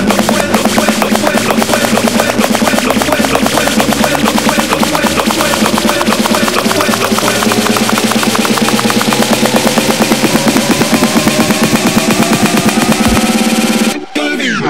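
Electronic house music build-up: a fast snare-drum roll over a synth line rising steadily in pitch, with the bass pulled out.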